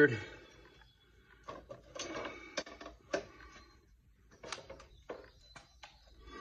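Scattered clicks and light metal clatter from a cordless drill and its hook attachment being lifted off a steel plate and handled, in two clusters of knocks with quiet between; the drill motor is not running.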